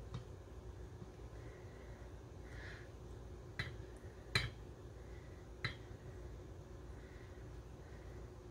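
A few sharp taps of a spatula against a glass measuring cup as thick melted chocolate is scraped out, the loudest about four seconds in, over a low steady room hum.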